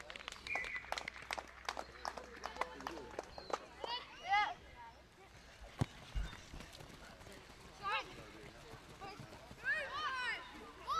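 Children running on a grass rugby field: a quick patter of footsteps through the first few seconds, with high-pitched children's shouts about four seconds in, again near eight seconds and near the end. A single low thump about six seconds in.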